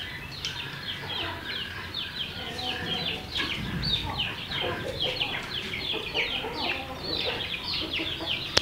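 A dense chorus of poultry birds chirping: many short, falling peeps, several a second, overlapping throughout.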